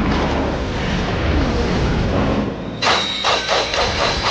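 Opening-title sound effects: a loud, dense rushing rumble, then near the end a quick run of about four sharp percussive hits with a ringing metallic tone, as the title appears.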